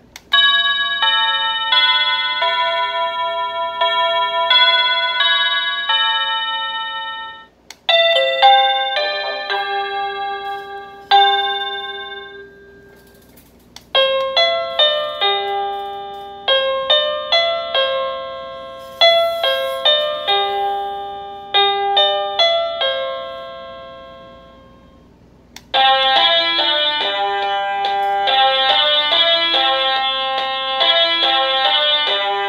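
Hampton Bay electronic doorbell chime playing its built-in melodies through its small speaker as the tune selection is cycled: four different tunes in turn, each starting abruptly, the last one busier and brighter.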